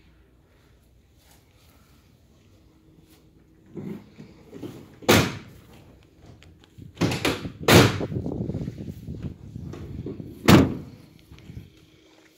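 Mercedes-Benz Sprinter van's rear cargo doors being handled and shut. From about four seconds in there are four loud slams, with rattling and clatter between the second and last.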